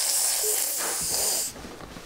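A child's breath hissing loudly right on the microphone, stopping about a second and a half in.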